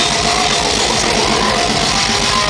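Death metal band playing live: heavily distorted electric guitars over fast, driving drums, loud and dense with no break.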